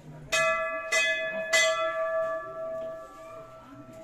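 Hanging brass temple bell struck three times, a little over half a second apart. Its clear ringing tone hangs on and slowly fades after the last strike.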